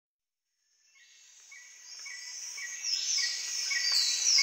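Chirping insects fading in from silence. Short chirps repeat about three times a second, and high falling whistles join in near the end.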